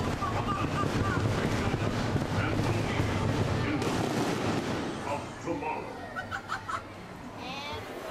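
Indistinct voices and calls over a steady noisy rumble inside an enclosed theme-park ride building. The sound drops in level about five seconds in.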